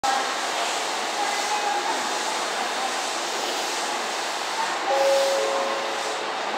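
JR West 227 series electric train approaching over the station points, a steady hiss of running noise. A short steady tone starts about five seconds in.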